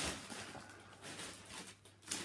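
Rustling and light handling noises as packaging and objects are rummaged through and lifted out, loudest at the start and fading away.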